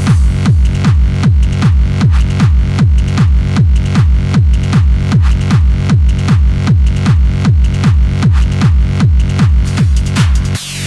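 Hard dance music: a loud, steady, fast kick drum at about two and a half beats a second, each hit dropping in pitch, under an electronic synth layer.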